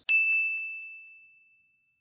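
A single high-pitched ding, struck once and ringing out on one clear tone, fading away over about a second and a half. It is an edited-in chime sound effect marking an on-screen title card.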